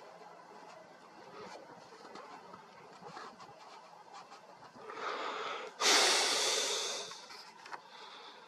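A person's breath close to the microphone: a short breath in about five seconds in, then a sudden loud exhale that fades over a second or so. A few faint clicks sound besides.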